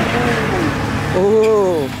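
Drawn-out spoken exclamations over the steady noise of passing road traffic.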